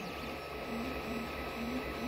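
FDM 3D printer running mid-print: its stepper motors give a few short, steady low tones one after another as the print head moves, over a steady hum.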